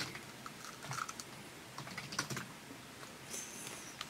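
Faint, scattered light clicks and taps of objects handled at a studio desk, such as headphones and script papers being moved.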